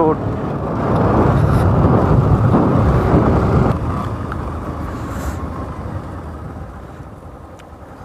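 Bajaj Pulsar NS200 motorcycle on the move, its engine and road noise mixed with wind rushing over the microphone. The sound is heaviest in the first few seconds and dies down steadily over the rest.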